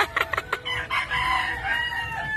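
Rooster crowing: one long call starting about half a second in, after a few short sharp clicks.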